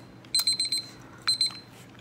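Digital countdown timer sounding its alarm: two bursts of rapid, high-pitched beeps about a second apart, the second cut short, signalling that the challenge time has run out.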